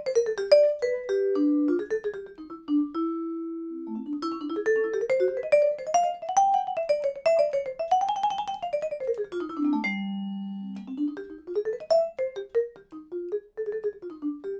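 Vibraphone played with flutter pedaling: a fast single-note melodic line that runs up to a peak and back down to a held low note about ten seconds in, then climbs again. The damper is lifted off the bars in time with the playing, so each note rings a little without blurring into the next.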